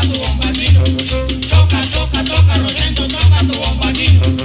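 Colombian tropical dance-band instrumental from a bombardino-led orchestra, with a deep bass note repeating a little more than once a second under a fast, even high rattling rhythm and a brass melody.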